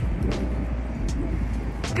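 Outdoor city ambience: a steady low rumble with a few faint ticks.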